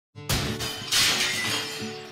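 Intro music, plucked guitar, with two sudden crashing sound effects that sound like breaking glass, the first just after the start and the second, louder one about half a second later, each fading away.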